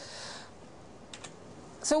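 A few quick, soft clicks about a second in, like keys pressed on a laptop keyboard, after a brief hiss at the start. A woman starts speaking near the end.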